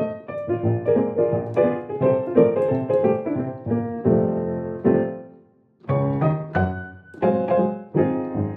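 Sampled Steinway Victory upright piano (The Crow Hill Company's Vertical Piano virtual instrument) playing a run of extended, jazzy chords through an old-radio speaker emulation. A little past halfway the notes die away to near silence for a moment before the playing resumes.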